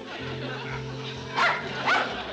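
A dog barks twice, two short barks about half a second apart, over background music.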